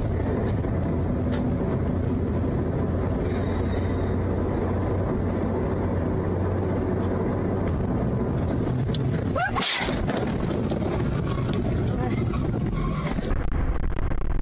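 Steady road and engine noise from a moving car, heard inside the cabin through a dashcam microphone. About ten seconds in comes one brief sharp sound with a quick sweep in pitch.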